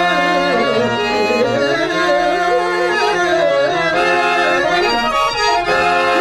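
Harmonium playing an instrumental melody over held notes, the accompaniment of a Telugu drama padyam.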